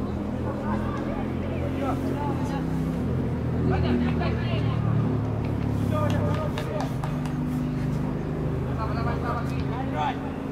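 Indistinct shouts and calls from boys and coaches on an open football pitch, heard from the touchline, over a steady low engine-like hum.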